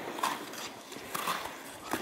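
Ice skate blades striking and scraping on rink ice in three short strokes about a second apart, as a small child takes stepping strides.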